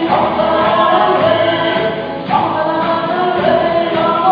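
Live Spanish-language praise song in a church: many voices singing together, led by singers with acoustic guitars. The singing carries on throughout, with a brief dip a little past halfway.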